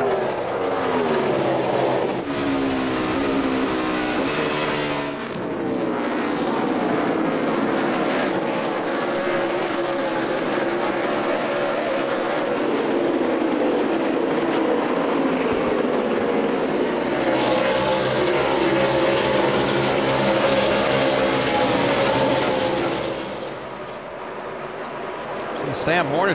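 A pack of NASCAR Cup stock cars' V8 engines running at race speed through a road course's curves. Several engines overlap and rise and fall in pitch as the cars lift, shift and pass, with a cluster of falling pitches a few seconds in.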